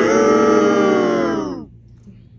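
A single loud, sustained pitched sound rich in overtones, lasting about a second and a half and sagging in pitch as it fades out.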